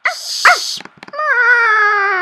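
Animal sound effects for a cat and dog squaring off: a sharp hiss with two short yelps, a few clicks, then one long cry falling in pitch.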